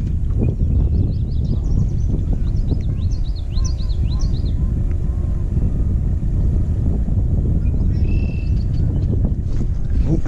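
Wind buffeting the microphone with a steady low rumble, and a flurry of quick, high bird chirps from about a second and a half to four and a half seconds in.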